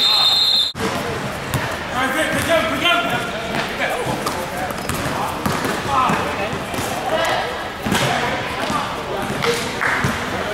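A referee's whistle blast that cuts off abruptly in the first second, then basketball game sounds: a ball bouncing on the court amid players' and spectators' voices.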